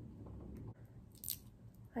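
Fingernails picking at the factory seal on a small contour stick's packaging: faint handling noise with a brief scratchy rustle about a second in.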